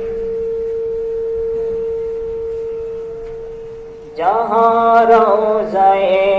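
Male voice chanting an Islamic devotional song through a PA: one long, steady held note fades over about four seconds, then a new sung phrase rises in a little after four seconds.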